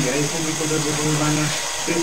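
A man talking over a steady background hiss, with a short pause near the end.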